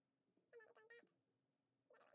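Faint cat meows: a short call about half a second in and a brief one near the end, over a faint steady hum.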